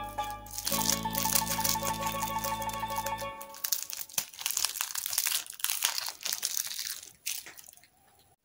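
Crinkling of a plastic lollipop wrapper being peeled off by hand, over background music that stops about three seconds in; the crinkling goes on alone until shortly before the end.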